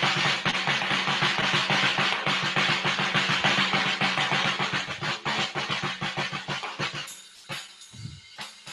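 Acoustic drum kit played in a busy, fast pattern of drum strokes under a steady wash of cymbals, thinning out and getting quieter about seven seconds in.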